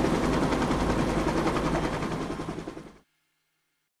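Cartoon helicopter rotor chopping in a rapid, even beat, fading away and stopping about three seconds in.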